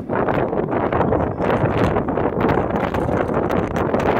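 Wind buffeting the phone's microphone, a loud rough rumble with irregular gusty bumps throughout.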